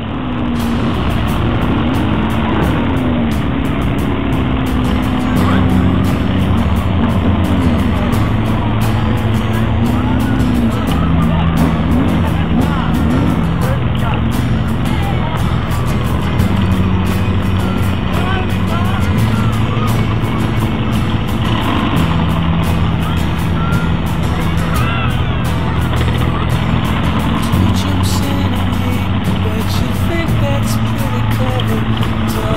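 Engines of a mass motorcycle ride running as the pack rolls along at low speed, with wind buffeting the microphone throughout.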